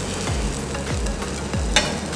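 A ghee roast dosa sizzling in ghee on a hot griddle, a steady frying hiss with one short sharp scrape near the end. A soft background music beat pulses underneath.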